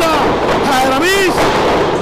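An excited commentator shouting in Spanish, with a sharp bang of a wrestler's body hitting the ring canvas.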